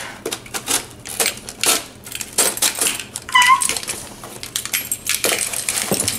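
Packing tape being picked at and torn off a cardboard shipping box: a quick run of short scratches, rips and crinkles, with one brief squeak about three seconds in.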